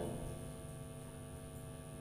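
Faint, steady electrical hum: low background room tone with no other events.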